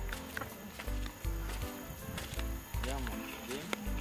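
Background music with a deep bass line in regular pulses, with voices over it.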